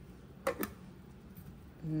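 Two light clicks about half a second in, close together, from items being handled on a kitchen counter, against quiet room tone.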